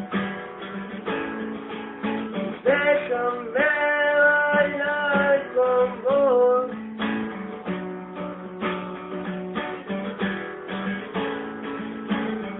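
Acoustic guitar strummed in a steady rhythm. From about three to seven seconds in, a voice holds long wordless notes over it, gliding up into them and sliding down at the end.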